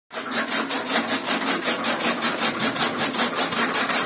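Chaff cutter's rotating flywheel blades chopping green fodder stalks for animal feed, driven by a 1 HP electric motor. A steady rhythm of swishing cuts, about four to five a second.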